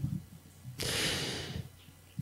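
A man's breath drawn in close to a microphone, a short hissing rush of under a second near the middle, after a faint mouth click at the start.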